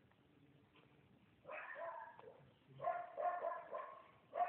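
A dog whining and yipping faintly, in two short high-pitched bouts, the first about a second and a half in and the second about three seconds in.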